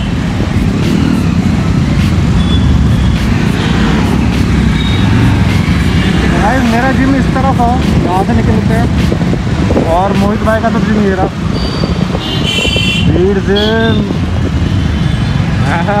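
Motorcycle riding through city traffic: a steady rumble of engine and road noise, with short bits of voice heard a few times, around the middle and near the end.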